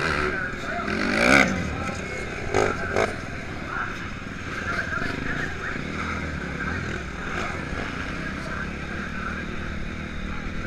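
Motocross dirt bike engine heard from onboard while racing, revving up and down under load, with the loudest burst of revs a little over a second in.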